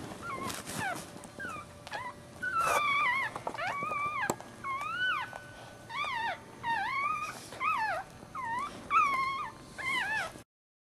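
Newborn Maltese puppy squealing: a run of short, high cries, each rising then falling in pitch, coming about once or twice a second and louder after the first couple of seconds.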